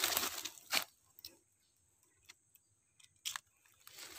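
Brief rustling and crunching of grass and dry leaves as someone pushes through undergrowth, ending in a sharp crack just under a second in. Then near silence with a few faint clicks.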